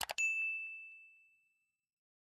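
Sound effect from a subscribe-button animation: two quick mouse clicks, then a single high bell ding as the notification bell is clicked, fading out over about a second and a half.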